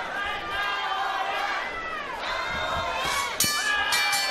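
Arena crowd shouting and cheering. About three and a half seconds in, a boxing ring bell rings out with steady ringing tones, ending the round.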